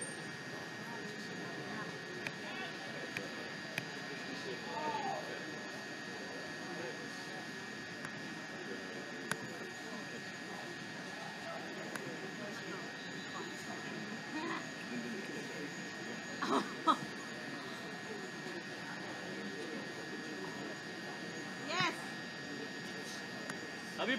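Faint, distant voices of players and spectators murmuring across an open field over a steady background hum, with two short louder calls, one about two-thirds of the way in and another near the end.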